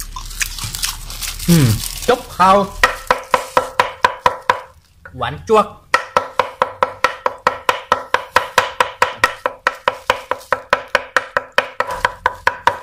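Steel cleaver mincing raw beef on a thick round wooden chopping block for laab: rapid, even chops about four to five a second, each with a short metallic ring from the blade. The chopping pauses briefly around five seconds in, then resumes.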